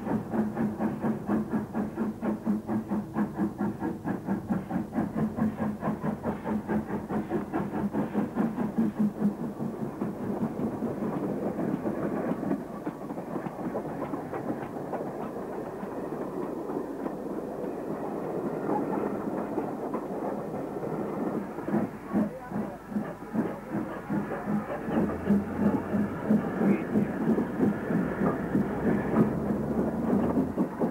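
Steam locomotive working hard: a quick, rhythmic chuffing from the exhaust with hiss. The beats blur into a steadier rush in the middle and come back strongly near the end.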